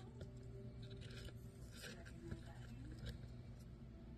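Faint, short scratchy crackles, a few in a row, as a Syrian hamster nibbles and picks at a seed-covered treat ball in paper bedding.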